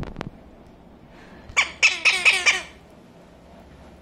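Cuban amazon parrot giving a quick run of about five harsh squawks, starting about a second and a half in and lasting about a second. A couple of sharp clicks come right at the start.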